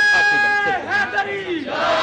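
A man's long held call over a loudspeaker, then a crowd of men shouting back in response.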